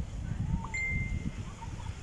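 Wind buffeting the microphone, an irregular low rumble, with a brief clear high tone about a second in.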